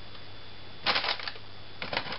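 Quick clusters of small clicks and rustles from objects being handled by hand, about a second in and again near the end, against faint room tone.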